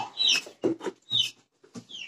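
Chicks peeping: a few short, high peeps that slide downward, spread across the two seconds, with some light knocks in between.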